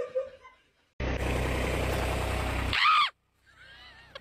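A loud, steady rumbling noise with a low hum for about two seconds, cut off by a short cry.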